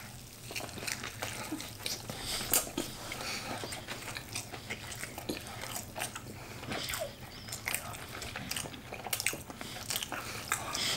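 Two people biting into cheeseburgers and chewing the mouthfuls close to the microphones: a long run of small, irregular mouth clicks and crunches.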